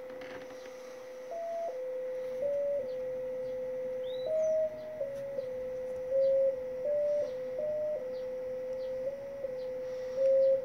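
JT65 digital-mode signal from an HF transceiver on 20 metres: a single pure tone that holds one low pitch and hops to a few slightly higher pitches, each step lasting about a third of a second. It is the audio of a 1-watt JT65 transmission going out.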